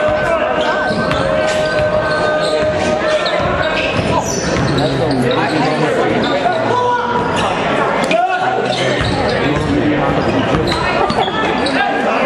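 A basketball being dribbled on a hardwood gym floor, with repeated short bounces, and players' sneakers squeaking on the court. Spectators talk throughout.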